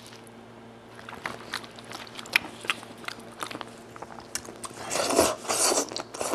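Scattered wet, sticky clicks of gloved hands tearing apart spicy braised goat head meat. Near the end come louder wet eating sounds at the mouth as a piece is taken in and sucked.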